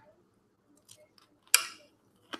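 Small clicks of eating with a fork: a few faint ticks, then one sharper click about one and a half seconds in.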